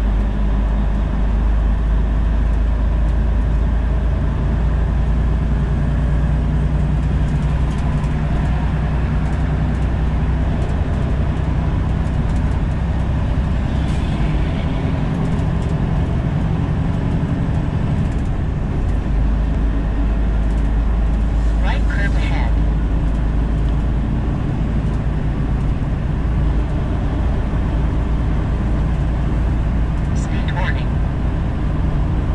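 Semi truck's diesel engine and road noise heard inside the cab while cruising on the highway, a steady deep drone. The deepest part of the drone eases for a few seconds midway, then comes back.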